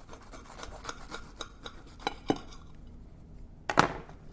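Knife cutting through a crisp, pressed grilled cheese sandwich on a plate. There is a run of faint crunching and scraping strokes, then a couple of sharper ticks a little past halfway, and a louder double click near the end.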